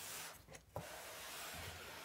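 Faint rubbing and scraping of hands sliding over a large cardboard box as it is turned around, with a short break about half a second in.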